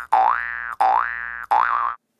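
Cartoon 'boing' sound effect repeated in quick succession: rising twangy tones about two-thirds of a second apart, the last one wobbling at its top before cutting off.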